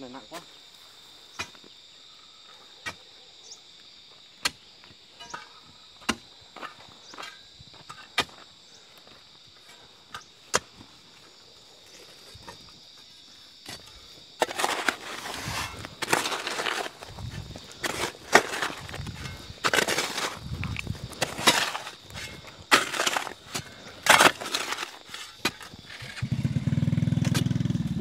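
A steady high hum with faint, sharp clicks every second or two. Then, from about halfway, a hoe and a crowbar strike and scrape into stony soil again and again in loud, irregular blows, as a rocky bank is dug out for a house foundation.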